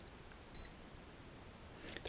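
A single short, high electronic beep about half a second in, over quiet room tone.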